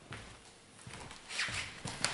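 A person moving about and sitting down in a leather armchair: scattered soft knocks and footsteps, then a louder rustle of clothing and paper shortly before a sharp click near the end.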